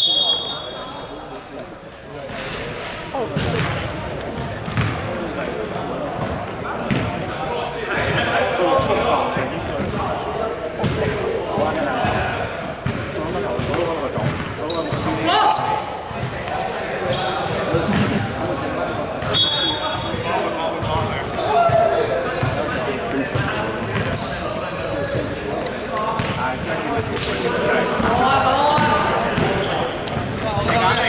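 A basketball bouncing on a wooden gym floor during play, with players' voices echoing in a large sports hall.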